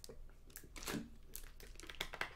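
Thin plastic water bottle crinkling and crackling in the hand as it is gripped while drinking and then lowered, a few faint irregular crackles.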